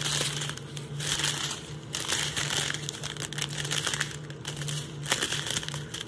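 Small clear plastic zip-lock bag of diamond-painting rhinestone drills crinkling irregularly as it is handled and turned in the fingers.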